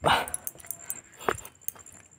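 A short, sharp vocal cry right at the start, then a single click about a second later against a quiet background.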